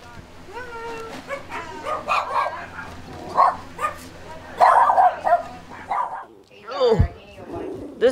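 Dogs barking and yipping again and again, with people's voices mixed in.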